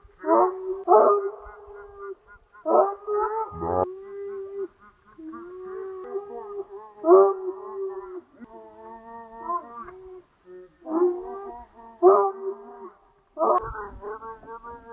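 Border collie barking and howling excitedly in repeated bursts, each sharp bark running into a long, held, wavering whine.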